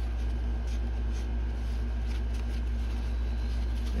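Paper towel rubbing and rustling softly as metallic paint is wiped off a resin stone, over a steady low hum.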